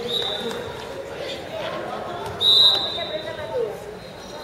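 Referee's whistle blown twice: a short blast at the start and a louder, longer one about two and a half seconds in, over voices of players and onlookers.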